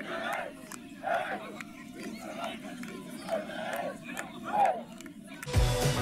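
Crowd of fans and players on the pitch shouting and cheering together, many voices at once, celebrating a win. Music cuts in near the end.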